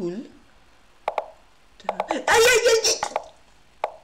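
A few short, soft knocks of online chess move sounds during a fast bullet game, with a loud wordless vocal outburst from the player in the middle as he loses a knight to a trap.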